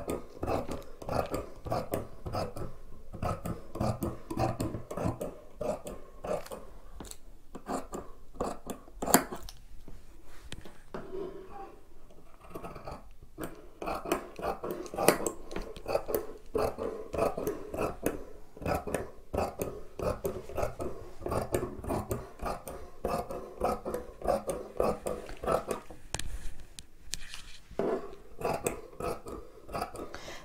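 Large dressmaker's shears cutting through knit jersey fabric on a wooden table, a continuous run of short snips and clicks with an occasional louder click.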